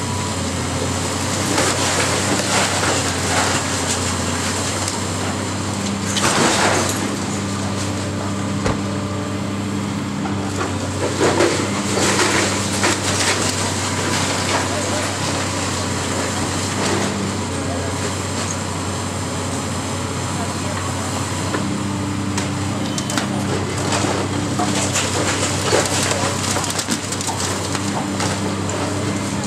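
Caterpillar high-reach demolition excavator running with a steady engine hum and a hydraulic whine that comes and goes, while brick masonry crashes and crumbles in several bursts as the boom tears into the building's wall.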